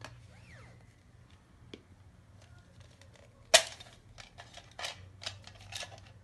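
Hard plastic Mr. Potato Head parts being handled and pulled apart, with faint rustling and clicking, one sharp loud plastic knock about three and a half seconds in, and a few lighter clicks near the end.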